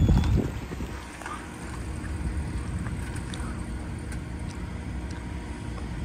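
Steady low rumble of a Ford 6.2-litre gas V8 running slowly, with a gust of wind buffeting the microphone in the first second.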